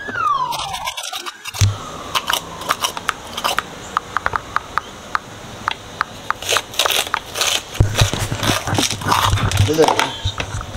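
A small metal spoon scraping the seeds and membranes out of halved jalapeño peppers and knocking them off against a plastic tub, heard as a run of irregular sharp clicks and scrapes.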